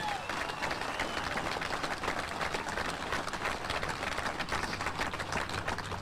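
Crowd applauding steadily: many hands clapping at once.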